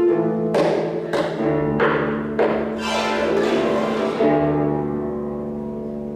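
Harp music: a run of loud, ringing plucked chords about half a second apart, then a last chord left to ring and fade over the final couple of seconds.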